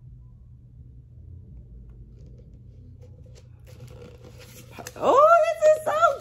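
A dog whining: a high cry that rises sharply in pitch and holds, starting about five seconds in and breaking off near the end, after a few faint rustles of handling.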